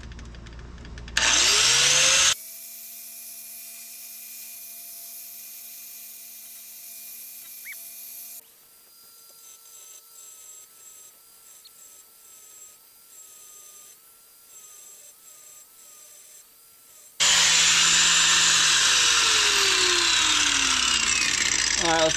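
Angle grinder with a cutoff wheel, not a high-powered one, grinding a notch into a truck's cross member close to the differential. A short loud burst of grinding about a second in stops abruptly, followed by a long quieter stretch with faint steady tones, and loud grinding starts again about three-quarters of the way in and runs on.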